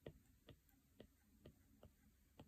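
Apple Pencil tip tapping on an iPad's glass screen while short strokes are drawn: faint clicks, about two a second.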